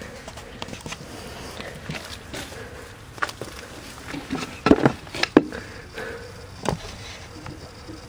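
A few scattered wooden knocks as pallet boards are handled and set down on a sheet of OSB, the two loudest about halfway through, half a second apart.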